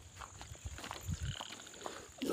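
Dry firewood sticks being gathered and handled, giving a few faint clicks and soft knocks, with a brief faint high chirp about a second in.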